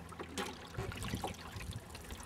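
Small waves lapping at the edge of a wooden dock: faint, irregular water sounds with a few soft splashes.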